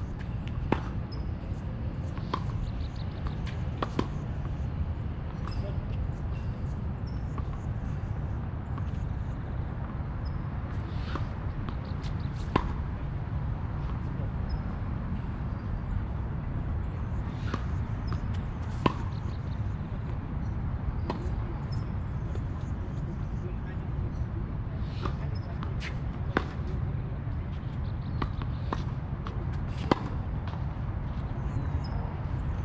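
Tennis balls struck by racquets and bouncing on a hard court: sharp pops every few seconds over a steady low rumble.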